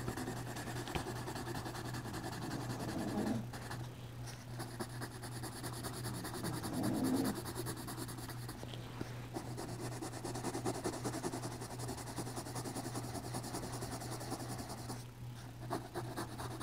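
Yellow colored pencil shading back and forth on a paper drawing pad: a soft, steady scratching of strokes over a low steady hum.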